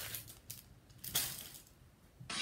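Piece of cross-stitch fabric being handled and folded: two short rustles, one at the start and one about a second in.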